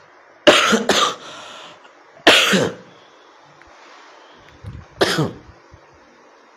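A man coughing: a quick pair of coughs about half a second in, another about two seconds in, and a last one near the end.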